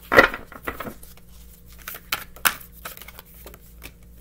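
A deck of oracle cards being shuffled by hand: irregular card clicks and rustles, the sharpest about a quarter-second in and again around two and a half seconds in.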